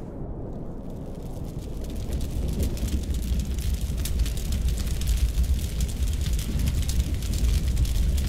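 Burning-fire sound effect: a deep rumble of flames with dense crackling over it, growing louder over the first few seconds and then holding steady.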